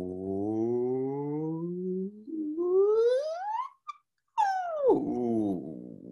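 A man's voice gliding in one long slide from a low hum up to a high pitch, slowly at first and then faster, breaking off briefly at the top, then sweeping back down low: a vocal siren warm-up following a low-to-high hand cue.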